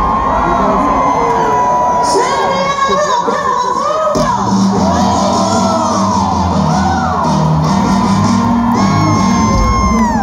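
Live rock band playing in an arena, heard from the audience, with crowd cheering and whooping over it. A bass line comes in strongly about four seconds in.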